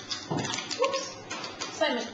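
Only speech: a man's voice, the start of an interview answer that the recogniser did not write down.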